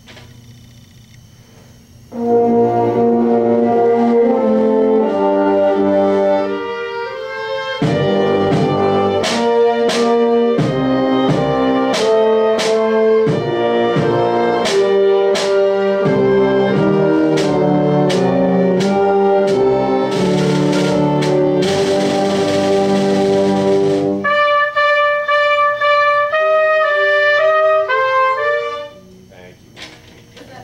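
A small student instrumental ensemble with strings plays a passage under a baton in rehearsal. The music starts about two seconds in and stays loud, with a run of sharp accented hits from about eight seconds and a brief wash of hiss a little after twenty seconds. The playing stops shortly before the end.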